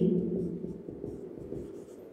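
Marker pen writing on a whiteboard: faint, uneven scratching strokes as a word is written out, growing quieter toward the end.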